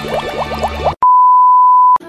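A run of quick rising chirps over background music, then a loud, steady single-pitch beep tone held for about a second that stops abruptly.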